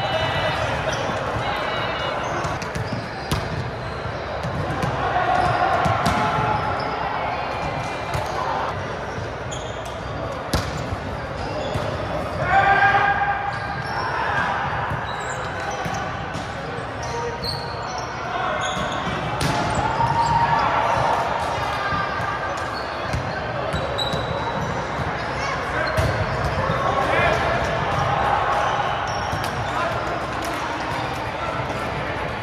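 Volleyballs being struck and bouncing off a hardwood gym floor across several courts, scattered knocks throughout, with players' voices and calls, one louder call about halfway through, echoing in a large hall.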